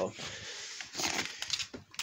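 Rustling and a few light knocks of handling as cables are gathered up and the handheld camera is moved.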